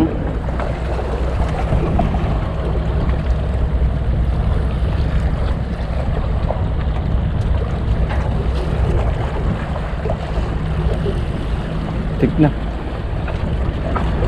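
Wind buffeting the microphone over a steady low hum, with small waves washing against the breakwater rocks.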